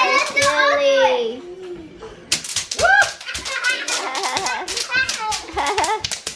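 Bubble wrap popping under a small child's running feet: rapid, irregular sharp snaps, with a short lull about two seconds in. Children squeal and shout over the popping.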